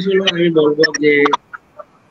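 Only speech: a man talking, his voice breaking off about a second and a half in.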